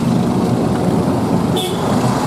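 A motor vehicle engine idling nearby with a steady low rumble. A short high-pitched beep comes near the end.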